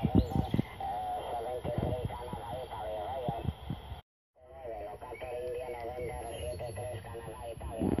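A distant radio operator's voice received on a Soviet-era R-323 military valve receiver and played through a loudspeaker: thin, band-limited and wavering, with crackling static underneath. The audio drops out completely for a moment about four seconds in.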